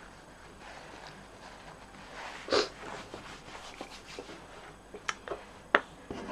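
Quiet room tone with one short noise about two and a half seconds in and a few light clicks near the end, as hands start handling paper card pieces on the table.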